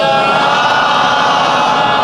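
A congregation reciting salawat aloud together in answer to the preacher's call: many voices chanting in unison as one steady, dense wash of sound.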